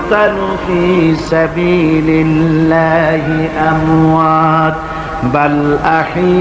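A man's voice chanting a Quranic verse in Arabic in the melodic recitation style, holding long notes that step and waver in pitch.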